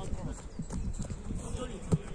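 Players shouting during a small-sided football game on artificial turf, with running footsteps and a sharp kick of the football just before the end.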